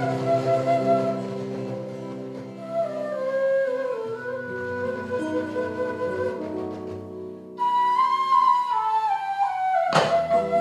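Transverse flute playing a slow melody over a nylon-string guitar accompaniment. About two thirds of the way in the flute comes in louder with a higher phrase that steps downward.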